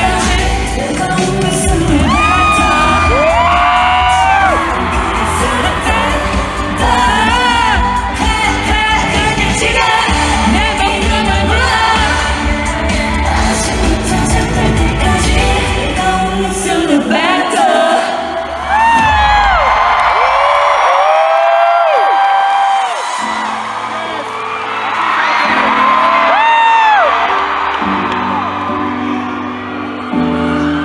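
K-pop group performing live in an arena: women's voices singing over a loud pop backing track, with the crowd whooping. The beat drops out a little past halfway through, and a new song's beat starts a few seconds later.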